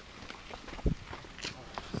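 Faint, scattered footsteps and scuffs of skate-shoe soles on rock and gravel while climbing down a rocky trail.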